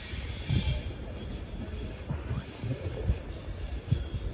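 Class 390 Pendolino electric train pulling away and drawing off into the distance: a low rumble of wheels on track with irregular low thuds and faint wheel squeal.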